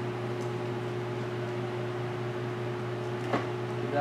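Steady electric hum of a running pedestal fan's motor, with one short tap a little after three seconds in.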